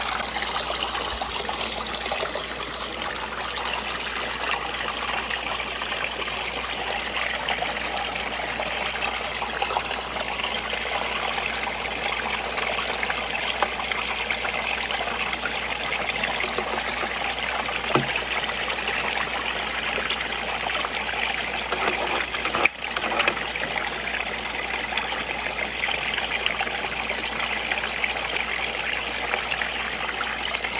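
Water running steadily down a six-inch recirculating cleanup sluice, splashing and trickling over its ribbed matting, with a brief bump about three-quarters of the way through.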